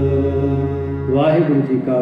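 Harmonium holding a steady sustained chord in Sikh kirtan; a little over a second in, its low notes stop and a man's chanting voice comes in.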